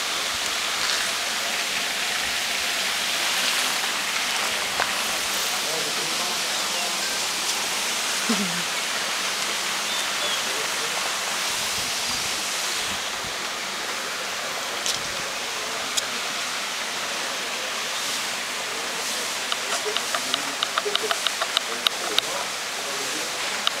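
A steady hiss of outdoor background noise, with faint distant voices now and then and a quick run of light clicks near the end.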